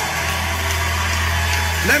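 A congregation's voices murmur faintly over a steady low hum that continues without a break.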